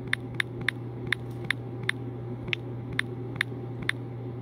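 Taps on a phone's touchscreen keyboard while a word is typed: about a dozen short, light clicks at an uneven pace, roughly three a second, over a steady low hum.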